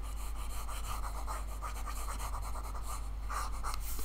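Stylus scrubbing across a drawing tablet's surface as on-screen working is erased, a steady fine scratchy rubbing, over a constant low electrical hum.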